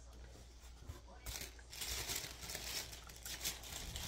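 Tape being picked and peeled off a cardboard product box, with packaging crinkling: soft, irregular tearing and rustling that gets busier from about a second in.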